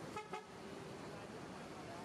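Two short, faint vehicle-horn toots just after the start, over the steady low noise of an approaching coach and terminal traffic.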